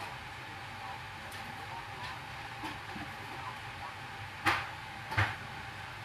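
Handling noise while working on a sneaker at a table: two short knocks about three-quarters of a second apart, over a steady background hiss.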